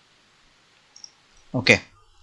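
Quiet room tone with a faint single computer-mouse click about a second in, then a man says "ok".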